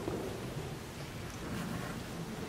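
Low rumbling room noise of a large church with faint rustling and shuffling of people moving about.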